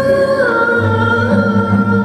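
A woman singing a long held melodic line, accompanied by violin, oud and a large frame drum; the sustained note steps down in pitch about half a second in.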